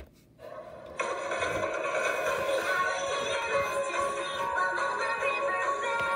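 A single tap on the play button, then a children's TV show's end-credits song starts playing through a screen's speaker, coming in softly and at full level from about a second in.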